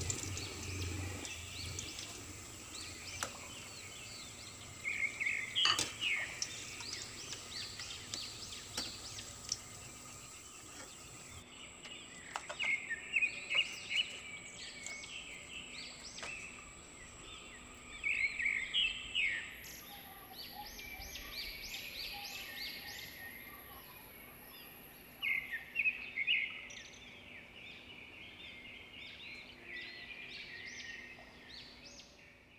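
Birds chirping in short runs of calls every few seconds, over a faint steady high-pitched whine.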